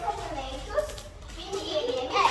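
Girls talking: children's speech in short bursts.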